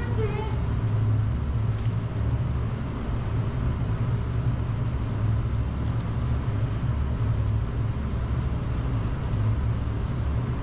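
A steady, low mechanical hum and rumble that runs without a break.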